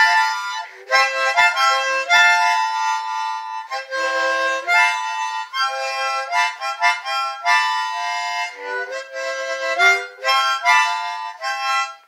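Harmonica played solo with cupped hands, a melody of short notes and chords broken into phrases with brief pauses. It stops near the end.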